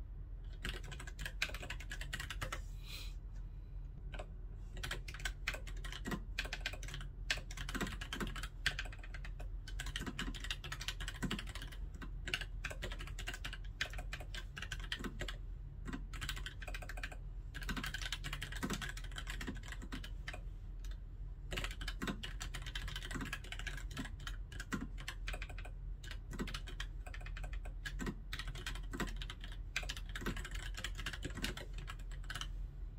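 Continuous typing on a white mechanical keyboard: a steady, fast patter of key clicks and keycap clacks without pause.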